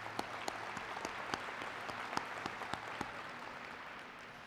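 An audience applauding: a dense patter of hand claps that thins out and fades toward the end.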